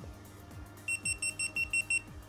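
GitUp Git2 action camera beeping: a rapid string of about eight short, high electronic beeps in the second half, over quiet background music.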